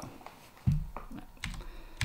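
A few short clicks of computer keys being pressed, the first the strongest, as slides are advanced on the lecture computer.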